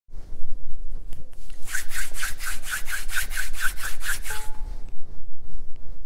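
Rapid back-and-forth rubbing, about five even strokes a second for roughly three seconds, then stopping.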